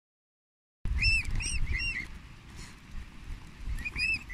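Silence for nearly a second, then cygnets peeping: a quick run of about four short high peeps, and two more near the end, over a low rumble.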